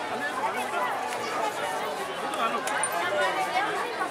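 Several people talking at once in the background, an indistinct chatter of overlapping voices with steady street noise beneath.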